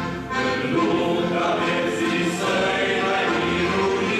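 Men's choir singing a hymn in harmony, accompanied by accordion, with a brief lull between phrases just after the start.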